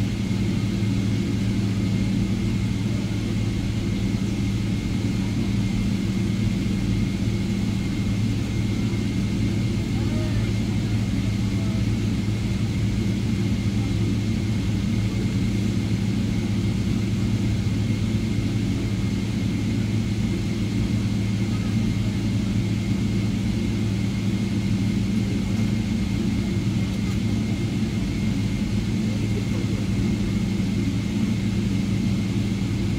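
Steady cabin hum inside a Boeing 777-300ER as it taxis, its GE90 engines running low with a faint steady high whine over the drone.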